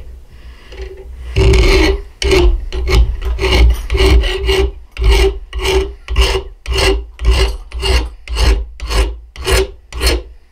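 Hand file rasping across the steel spine of a knife held in a vise, about fifteen strokes at roughly two a second, starting about a second and a half in. The spine is being filed square to a 90-degree edge for striking a ferro rod.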